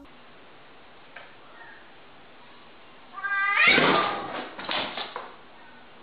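Domestic cat meowing: one long, loud call starting about three seconds in and fading out about two seconds later.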